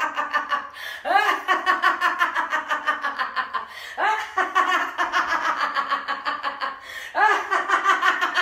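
A woman laughing heartily on purpose, laughter-yoga style, in long runs of quick "ha" pulses, several a second. Fresh bouts start high and slide down in pitch about a second in, around the middle, and near the end.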